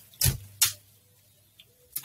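Two brief clicks within the first second, then near silence.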